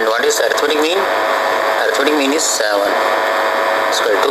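A person speaking throughout, over a faint steady hum.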